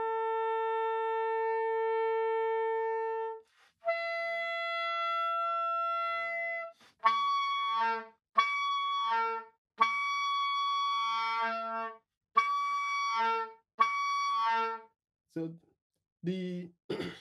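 Soprano saxophone playing an overtone-series exercise on one held low fingering. It sustains the octave overtone, then after a short break a higher overtone, then tries the next overtone in about five short tongued notes, each roughly a second long.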